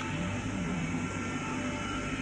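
Quiet music from an old TV episode's soundtrack under a steady hiss from the worn videotape-quality recording.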